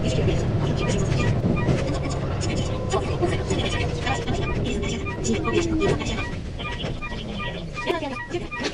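Sped-up running sound of a Keihan 8000-series electric train, with rumble and rapid clicking from the wheels. A tone glides slowly downward as the train slows for a station stop.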